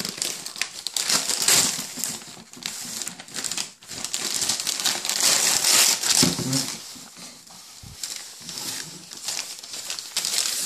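Tissue paper crinkling and rustling as it is pulled out of a paper gift bag, loudest about a second in and again from about five to six and a half seconds.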